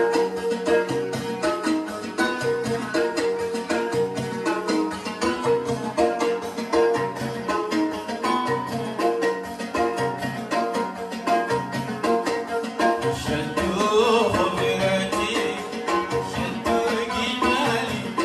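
Traditional Yemeni wedding dance music played loud through a sound system: a steady rhythmic drum beat under a held instrumental line. A man's singing voice comes in about thirteen seconds in.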